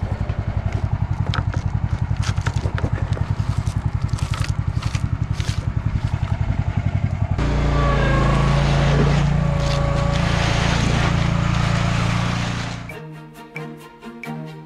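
Motorized concrete buggy's engine running with a rapid, even pulse, then revving up to a steadier, higher drone about seven seconds in as the hopper tips and dumps its load of concrete. Music comes in near the end.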